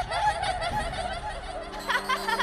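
Several high-pitched cartoon voices giggling together, overlapping in a chorus of laughter.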